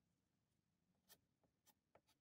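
Near silence, with a few faint, short ticks about a second in and near the end.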